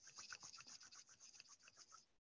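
Faint, rapid rubbing of hands or fingers together, close to the microphone: quick, even back-and-forth strokes, about seven a second, used to activate the hands for energy healing.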